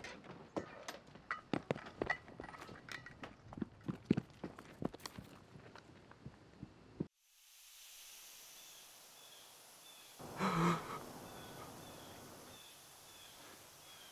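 Irregular sharp clicks and knocks, several a second, for about seven seconds. They stop suddenly, and a steady hiss follows, with one louder burst about ten and a half seconds in.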